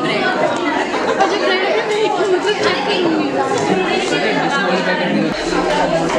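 Many people talking at once: overlapping chatter with no single voice standing out.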